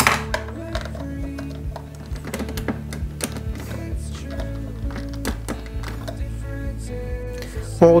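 Background music with held notes, which shift about halfway through. Over it are scattered light clicks and taps of small model parts being handled and pressed into place.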